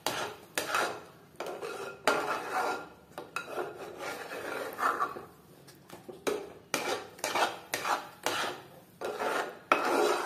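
A metal spoon stirring thick rice halwa in a metal pot, scraping the bottom and sides in repeated strokes, about two a second. The halwa is being stirred without a break so it does not stick to the bottom.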